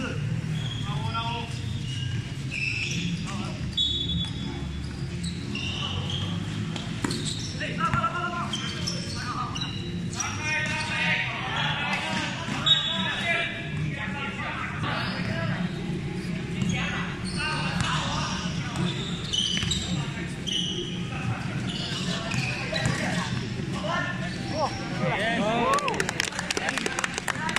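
Basketball game in play: the ball bouncing on a hard court amid players' and spectators' shouts and chatter, in a reverberant covered hall. A single louder knock comes about halfway through.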